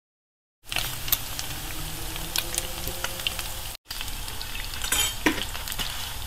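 Mutton pieces sizzling and crackling in a nonstick frying pan as a wooden spatula stirs them. The sizzle starts about half a second in and breaks off for an instant a little past halfway.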